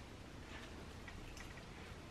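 Quiet room tone with a few faint clicks.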